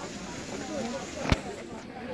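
Background voices of people talking, with one sharp click or knock about a second and a half in.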